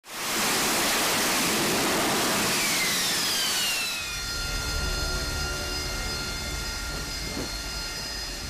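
AV-8B Harrier jet engine noise: a loud roar with a whine that falls in pitch just before it drops away about four seconds in, then a quieter steady whine over a low rumble.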